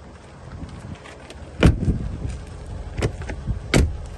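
Range Rover rear door being handled and shut: a heavy thud about a second and a half in, the loudest sound, then two sharper knocks near the end, over a low steady hum.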